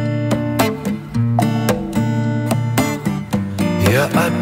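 Strummed acoustic guitar chords in an instrumental passage of an acoustic song arrangement, with no singing.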